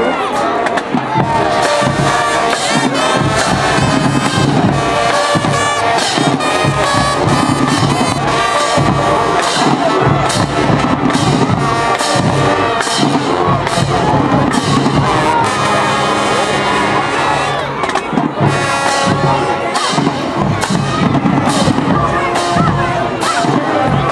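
High school marching band playing: brass with sousaphones over a drumline's regular beat, with the crowd cheering and shouting throughout.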